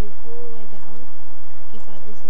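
A person's voice making drawn-out, wordless hums in slowly bending tones, over a loud steady low hum on the recording.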